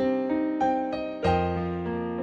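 Instrumental piano music: slow notes and chords, each struck and left to ring, with a lower, fuller chord a little past the middle.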